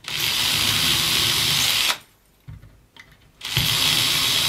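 Cordless drill spinning a 2 mm bit through the Kreg hinge jig's guide into MDF, boring the small pilot holes for the hinge screws. Two steady runs of drilling: one of about two seconds, a short pause, then a second that starts near the end.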